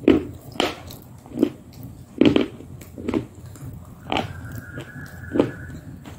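Close-miked eating sounds: wet chewing and lip smacking in about eight separate, irregular bursts, the loudest a little after two seconds in.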